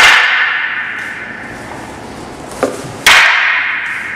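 Two wooden staffs clacking together twice, about three seconds apart, as a horizontal staff strike is met by a side block. Each clack is loud and rings on, fading over about a second, with a smaller knock just before the second.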